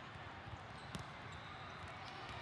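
Busy ambience of a large hall full of volleyball courts: a steady murmur of distant voices and play, with one sharp ball thump about a second in.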